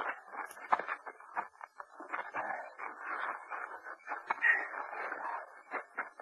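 Radio-drama sound effects of irregular rustling and scraping with scattered small knocks, as of a body being dragged out of the way through brush.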